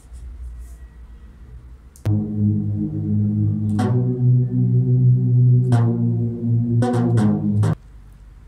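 Synthesizer chords from beat-making software, starting about two seconds in. Sustained chords with a deep bass change pitch every couple of seconds, then twice in quick succession, and cut off suddenly near the end.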